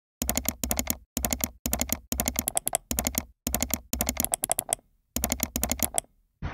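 Computer keyboard typing sound effect: quick runs of crisp key clicks, several keystrokes in each run, broken by short dead-silent gaps.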